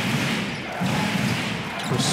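Arena crowd noise during live basketball play, with a basketball bouncing on the hardwood court.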